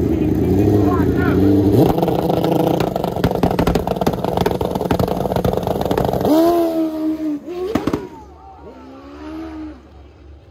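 Turbocharged drag motorcycle held at high revs on the line, then launching about two seconds in and running hard down the strip. Spectators shout over it about six seconds in, and the bike's sound drops away suddenly near eight seconds.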